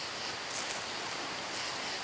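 Steady hiss of the outdoor night background with a few faint, brief rustles.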